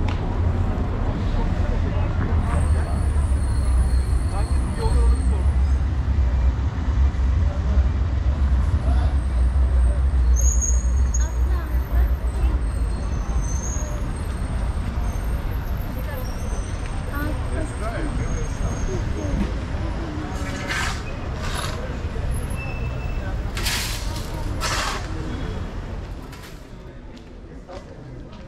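Busy street ambience: a steady low rumble of road traffic with voices of passers-by, and a few short hissing bursts about three-quarters of the way through. The traffic rumble falls away near the end.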